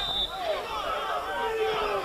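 Several players shouting over one another in protest, with the end of the referee's whistle blast for a foul cutting off just after the start.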